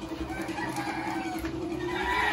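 Chickens clucking and a rooster crowing, with a steady held call running through.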